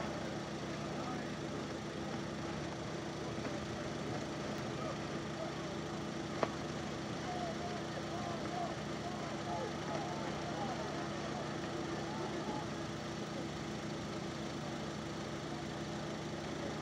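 A steady hum from an idling engine, with faint voices from a crowd in the background and a single sharp click about six seconds in.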